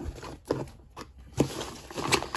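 Plastic poly mailer bag being grabbed and handled, with two short crinkles, about half a second and a second and a half in.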